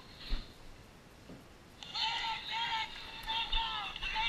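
Electronic sound effect from a tactical laser tag gun: a warbling, high-pitched synthetic tone that starts about two seconds in and repeats in short bursts.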